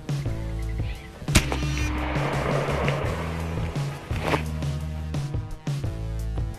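Background music with a steady beat, broken about a second and a half in by a single sharp report from an AEA Zeus .72 calibre big-bore PCP air rifle firing a slug, followed by a short rush of noise.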